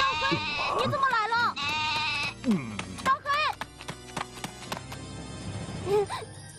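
A goat bleating several times in quavering calls over the first half, over background music that carries on alone afterwards.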